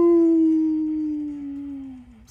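A person's long howl-like cry held on one note, sliding slowly down in pitch and fading over about two seconds: an excited cry at a big card pull.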